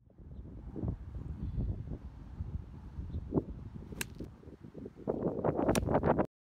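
Wind rumbling on the microphone, with a sharp click about four seconds in as an iron strikes a golf ball, and a second click near the end as the wind noise grows louder.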